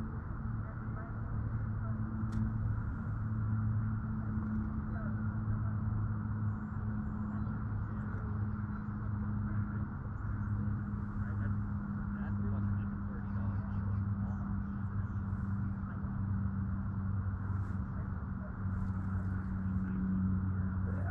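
Steady low electric hum of a Lowrance Ghost trolling motor holding the boat in position, running evenly with a faint hiss beneath it.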